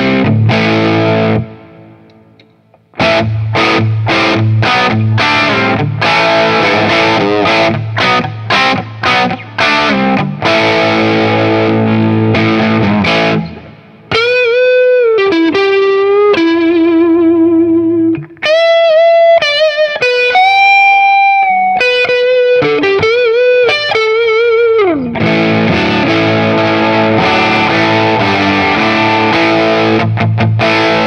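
EART 335-style semi-hollow electric guitar played through a Mezzabarba Trinity amp on channel one with a boost. Strummed chords, one left to ring out briefly about two seconds in, then a single-note lead line with string bends and vibrato in the middle, then chords again near the end.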